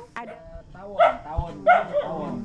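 A dog barking twice, short and loud, about a second apart, with faint talk in the background.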